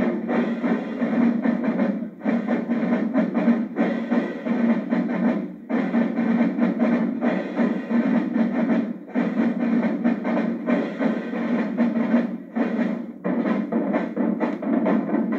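A marching drumline of snare drums playing a fast, dense cadence together. The playing comes in phrases with a brief break about every three and a half seconds.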